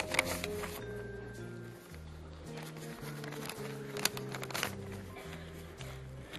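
Soft background music of low held notes that step from pitch to pitch every second or so, with a few brief crackles of paper being handled.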